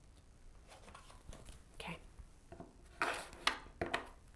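A deck of tarot cards being handled and cut into two halves, the cards rustling against each other about three seconds in, followed by a couple of sharp taps near the end.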